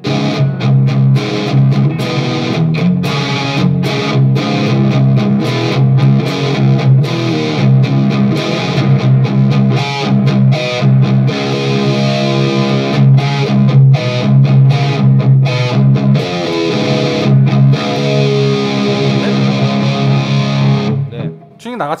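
Electric guitar played through a KHDK Ghoul Screamer overdrive pedal with its 'high' toggle engaged, which boosts the treble: continuous distorted chord riffing with a sharp, bright tone, stopping about a second before the end.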